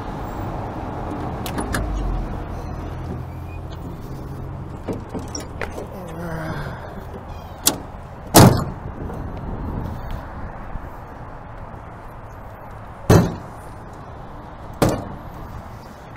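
The fire engine's Detroit 6V92 two-stroke V6 diesel idles with a low steady hum, then fades away about five seconds in. A metal cab door shuts with a bang about eight seconds in, followed by two more sharp knocks near the end.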